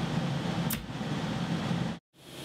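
Steady background hum of a small workroom, like an air-conditioning or fan unit running, with one brief sharp click just under a second in, after which it is a little quieter; the sound cuts off abruptly at the end.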